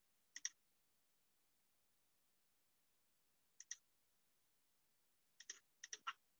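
Computer mouse clicking against near silence: a quick double click near the start, another about three and a half seconds in, then a few more clicks in the last second.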